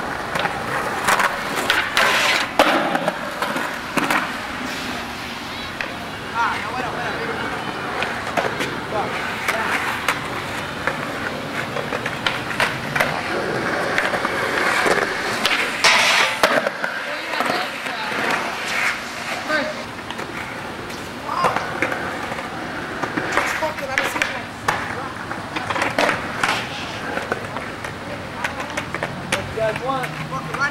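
Skateboard wheels rolling on concrete, with repeated clacks and hard impacts from tails popping and boards landing. About halfway through, a board slides down a steel stair handrail.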